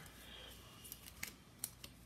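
Faint handling of paper number cards, with a few light clicks in the second half.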